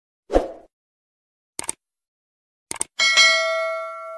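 Sound effects for a YouTube subscribe-button animation. A single thump comes about a third of a second in, then two pairs of mouse clicks. About three seconds in, a notification-bell ding rings on and fades slowly.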